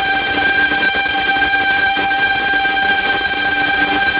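Sustained electronic drone from an industrial techno track: one steady horn-like tone with a stack of overtones, held over a noisy hiss, with no drum beat.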